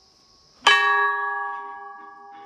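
A brass temple bell struck once about half a second in, then ringing on with several steady tones that slowly fade.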